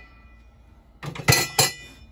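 Stainless steel parts of a DreamPot thermal cooker clinking and clanging as they are handled. A faint metallic ring comes first, then a quick cluster of sharp metal clinks about a second in.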